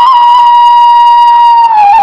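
Thai khlui (wooden end-blown flute) playing a slow melody: one long held note that sags slightly in pitch, then slides down to a lower note near the end.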